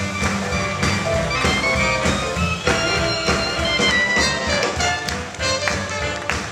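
Live jazz band with saxophone, trumpet, double bass, piano and drums playing an upbeat number, with a steady beat.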